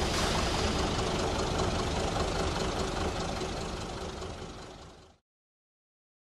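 Diesel locomotive engine running as it pulls away, slowly fading, then cutting off abruptly about five seconds in.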